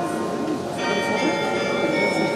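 Tower carillon bells played from the keyboard: several bells are struck together about a second in and ring on over the tones of earlier notes still dying away.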